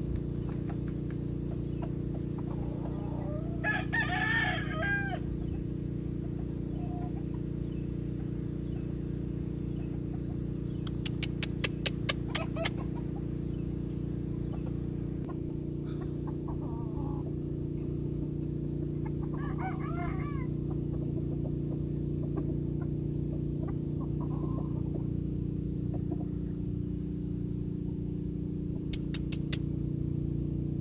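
Rooster crowing a few times, most clearly about four seconds in and again around twenty seconds, over a steady low hum. A quick run of sharp clicks comes around the middle.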